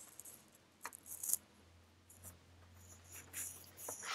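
Faint, scattered clicks and rustles of handling noise at a video-call microphone, over a low steady electrical hum. The sharpest click comes about a second in, with another cluster a little after three seconds.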